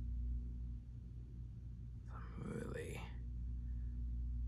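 A man's voice: one short, quiet half-spoken word about two seconds in, over a steady low hum.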